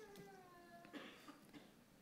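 Near silence, with one faint pitched sound near the start that falls slightly in pitch and lasts just under a second.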